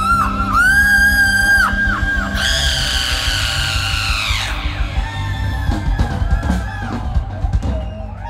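Live rock band playing loudly, with a long high yell about two and a half seconds in that falls off after about two seconds. The band then thins out to scattered drum and guitar hits.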